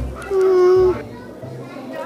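A small girl humming a thoughtful "hmm" once, a single held, even-pitched note about half a second long.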